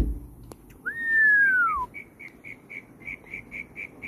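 A single clear whistle, about a second long, that rises briefly and then glides down, followed by a run of short high pips at about four a second. A brief bump sounds right at the start.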